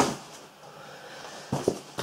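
Cardboard box being handled, quiet at first, then a quick double knock about one and a half seconds in.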